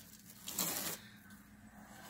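Tulle ribbon rustling as it is bunched up in the hands, one short rustle about half a second in.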